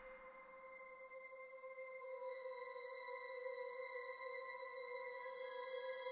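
Background soundtrack music: an ambient drone of several held tones that slowly grows louder.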